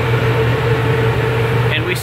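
Electrak 1 duct-cleaning vacuum collector running at high airflow after being turned up on its variable frequency drive: a steady rush of air with a constant low hum and a fainter steady whine.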